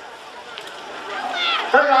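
Steady outdoor background noise with no distinct source, then a man's voice starts speaking about a second and a half in.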